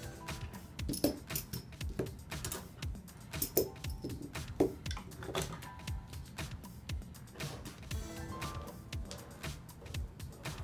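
Background music, with a string of sharp metallic clinks and knocks as steel washers are set down one by one as pattern weights on a paper pattern over fabric.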